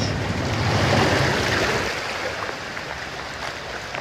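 Floodwater surging in waves across a flooded street, a rushing wash of water that swells about a second in and then eases off.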